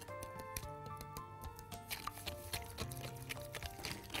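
Soft background music with a light stepping melody, over quick light clicks of a wire whisk against a glass Pyrex dish as eggs and sugar are beaten.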